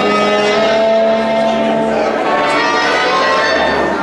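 Sardana music played by a cobla, with long held reedy notes over a lower sustained line.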